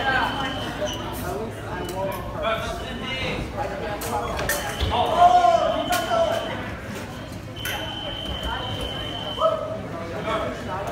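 Fencing scoring machine sounding a steady high beep twice, each lasting a second or two, over voices and chatter echoing in a large hall, with scattered sharp clicks.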